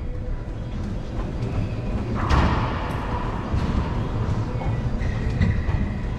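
Racquetball rally in an enclosed hardwood and glass court: sharp pops of the ball off racquet and walls, the loudest about two seconds in with an echoing ring after it, over a steady low rumble.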